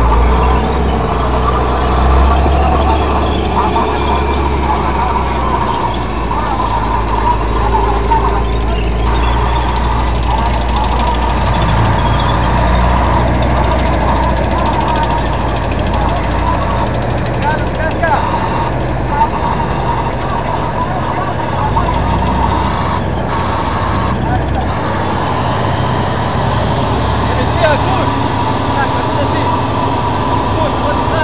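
Tank engine running, a loud steady low rumble with busy mechanical noise over it.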